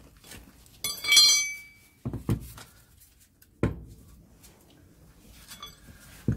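A pry bar clanking against a Land Rover Series gearbox casing as the transfer box is levered off it. There is one bright, ringing metallic clank about a second in, then two duller knocks at about two and three and a half seconds in.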